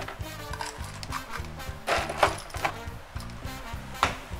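Background music with a steady beat, and about two seconds in a brief clatter of ice cubes being scooped and dropped into a glass.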